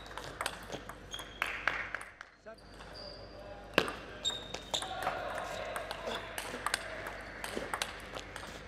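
Table tennis ball clicking off bats and bouncing on the table in quick irregular strokes during rallies, with short high squeaks of players' shoes on the court floor.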